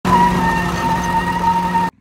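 Wheelspin of a concrete-cast tyre on asphalt with the car's engine held at high revs: a loud, harsh grinding rush over a steady high whine. It cuts off suddenly near the end.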